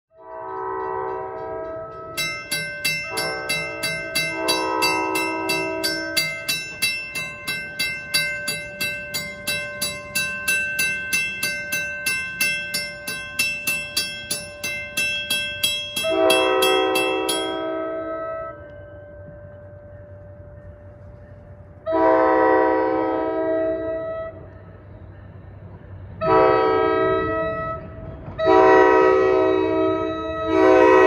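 An approaching train's horn sounds a series of blasts while a railroad crossing's warning bell rings with fast, even strokes. The bell stops about two-thirds of the way through. After that the horn gives two long blasts, a shorter one and another long one.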